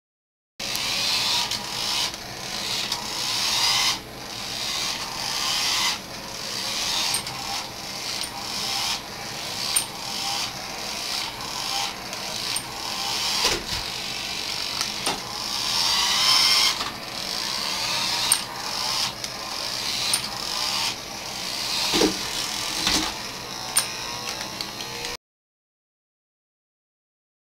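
Electric drive motor and gearbox of a 1980s Tandy radio-controlled Chevy pickup running as the truck drives forward and in reverse. It goes in a string of short runs that build up and then cut off sharply, with a few knocks near the middle and again toward the end.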